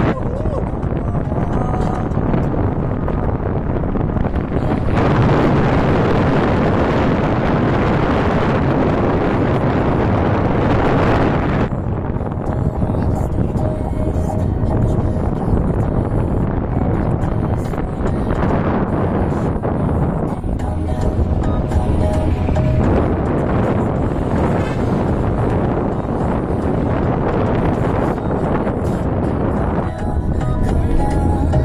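Wind buffeting the microphone over the steady running noise of a vehicle on the move, louder from about five to twelve seconds in. Faint music plays underneath.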